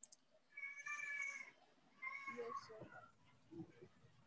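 Two faint, drawn-out meows from a cat, the first about half a second in and the second shorter one about two seconds in.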